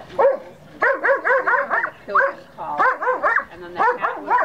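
Dobermann barking at a helper in the blind, the bark-and-hold of IPO protection work. The barks come rapidly, about four a second, in runs broken by short pauses.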